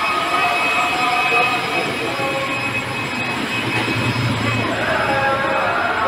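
Busy indoor market ambience: a steady wash of background noise with indistinct voices of shoppers.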